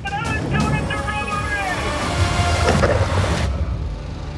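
Dramatic documentary soundtrack: several gliding tones over a deep rumble that builds to its loudest about three seconds in. A thin high whine rises steadily through the middle, and the sound cuts off sharply near the end.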